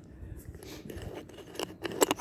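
Cat crunching dry kibble: a string of short, irregular crisp clicks as it chews.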